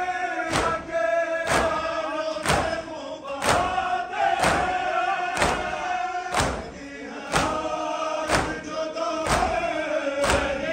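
Crowd of men chanting a noha, a Shia lament, together, with a sharp unison chest-beating slap (matam) about once a second.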